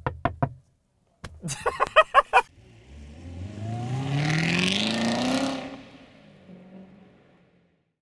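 A car door handle is tugged repeatedly against a locked door: a burst of quick clacks, then another about a second later. Then a car engine accelerates, rising in pitch, swelling to a peak about five seconds in and fading away.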